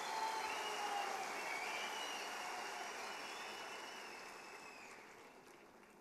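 Audience applauding in a large hall, the clapping slowly dying away to almost nothing near the end.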